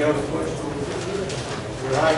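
A man talking in a meeting hall; only speech, with no other distinct sound.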